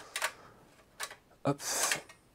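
A few light metal clicks and a short scrape as the sheet-metal drive bracket of a Shuttle DS61 mini PC is unclipped and lifted out of its steel chassis.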